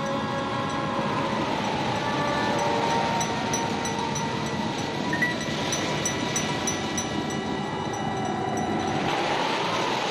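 Eerie horror soundtrack: a wavering, wailing tone that slowly rises and falls in pitch over a steady rushing noise.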